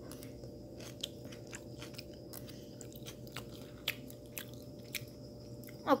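A person chewing a spoonful of crab basil fried rice close to the microphone: faint, irregular soft mouth clicks over a low steady hum.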